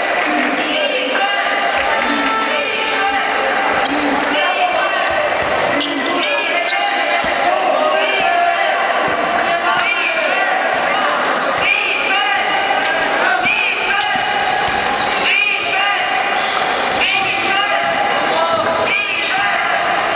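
Basketball being played on a hardwood court in an echoing sports hall. The ball bounces as it is dribbled, and basketball shoes squeak in many short, high chirps. Voices from players and spectators run underneath.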